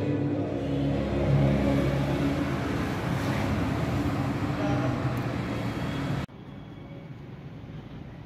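A steady rushing, droning noise that cuts off suddenly about six seconds in, leaving only a faint steady hiss.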